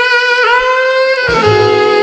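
Jazz saxophone playing slow, sustained notes of a ballad melody that bend slightly upward, with the band's lower instruments coming in near the end.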